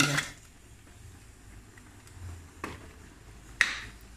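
A steel ladle knocking against steel cookware while ground masala paste is scraped into a pressure cooker: two sharp clicks, one a little past halfway and a louder one near the end, with little else heard between them.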